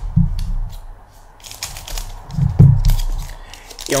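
Foil Pokémon booster pack wrapper crinkling in the hands as it is handled, with a couple of dull handling thumps, the loudest about two and a half seconds in.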